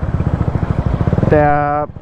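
Honda Sonic motorcycle with a swapped-in 250 cc engine, running at an even pace under way, heard as a steady rapid pulsing.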